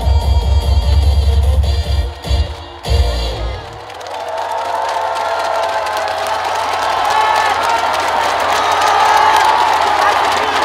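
A song's loud music with a heavy bass beat ends with a couple of final hits about three seconds in. A crowd then cheers and shouts, swelling and holding through the rest.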